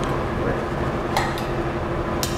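A metal spoon scraping tomato paste out of a small stainless bowl into a stainless skillet, with one sharp metal clink about a second in, over a steady low background hum.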